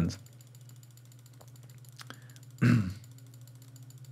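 Low steady hum with a fine, even flutter and a few faint clicks, broken about two and a half seconds in by a short voiced sound from the man.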